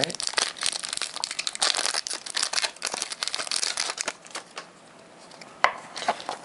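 Foil booster pack wrapper crinkling and tearing as the pack is opened: a dense crackle for about four seconds, then quieter rustling and a single sharp click near the end.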